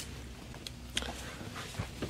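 Faint clicks and rattles from a folded collapsible wagon's metal frame being pulled out and handled, over a low steady background.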